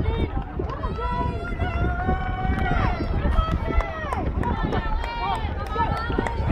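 Spectators shouting and cheering on runners, several voices overlapping in long drawn-out yells, with wind rumbling on the microphone.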